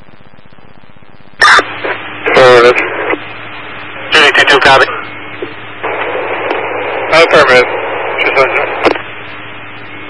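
Police scanner radio hiss with a low hum, broken by about five short, unintelligible transmissions that start and stop abruptly as the squelch opens and closes.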